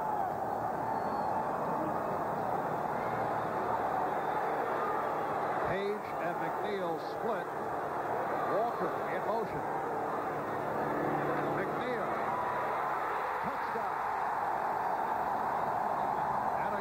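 Large football-stadium crowd: a steady, dense din of many voices and shouts.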